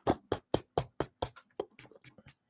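A quick run of light, evenly spaced taps, about four or five a second, growing fainter toward the end.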